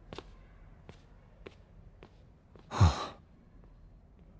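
A single breathy sigh, "haa", about three seconds in, dropping in pitch as it trails off. A few faint ticks come before it.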